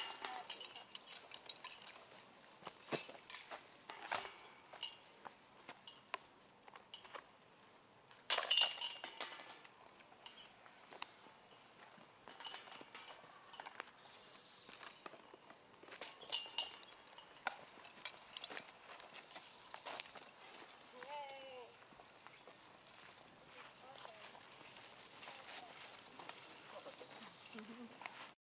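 Putted discs striking the metal chains of a disc golf basket: a jangling chain rattle about 8 seconds in and again about 16 seconds in, each ringing for about a second.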